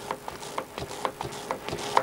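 A large ink dabber dabbing and pressing ink into the etched lines of an etching plate: soft, irregular knocks and rubbing.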